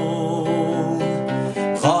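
Nylon-string classical guitar being strummed and played steadily, with a man's singing voice coming back in near the end.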